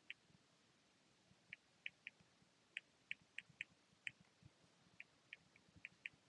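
Faint, irregular taps and clicks of a stylus tip on a tablet's glass screen during handwriting.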